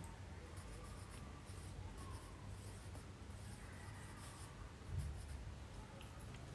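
Pencil writing on a paper textbook page: faint, irregular scratching strokes as a word is written. A soft low thump comes about five seconds in.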